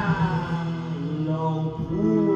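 Live band performance: a male singer's drawn-out vocal line that slides down in pitch, over a steady sustained instrumental drone with acoustic guitar.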